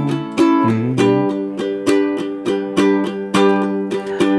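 Ukulele strummed in even downstrokes, about three strums a second, ringing one chord.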